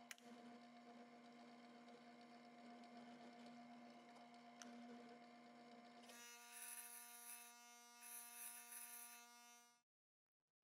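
Drill press motor running with a faint, steady hum. About six seconds in its pitch changes and a scratchy hiss joins it, fitting the bit cutting into a thin rusty steel strip. The sound cuts off suddenly near the end.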